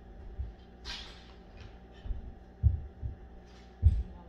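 A sheet of paper rustling as it is handled, about a second in, then a few dull low thumps. A faint steady hum lies underneath.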